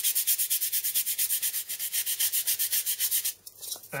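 A bare palm rubbing fast back and forth over the edge of a block of crumbly insulation foam, sanding the edge round by hand: an even, scratchy hiss of about eight strokes a second that stops a little before the end.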